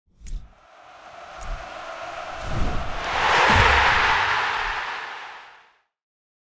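Title-sting whoosh effect: a rush of noise that swells to its loudest a little after halfway, then fades away just before the end, with a few low thumps under it.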